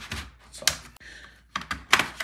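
A laptop's back plate being pried off at its edges, giving several sharp clicks as it separates from the chassis, with three close together near the end.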